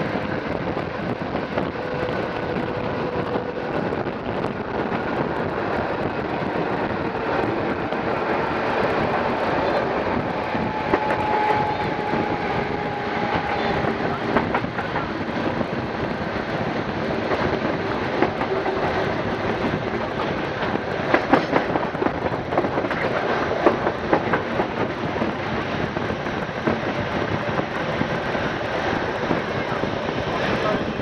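CP 2000 series electric multiple unit running on the track, heard from an open window: steady wheel-on-rail and wind noise with a faint whine drifting down in pitch. A cluster of sharp clacks from the wheels over rail joints and points comes about two-thirds of the way through.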